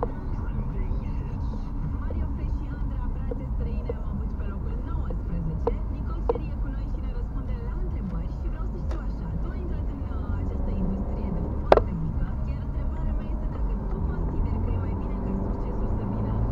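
Inside a moving car's cabin: steady low road and engine rumble while driving in traffic, with a few short sharp clicks, the loudest about twelve seconds in.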